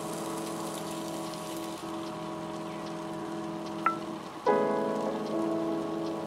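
Egg and bread frying in vegetable oil on a griddle, a fine crackling sizzle under background music of held chords. The music dips briefly and a loud new chord comes in about four and a half seconds in.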